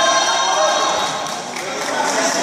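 People's voices calling out in a sports hall, with one held, high shout in the first second.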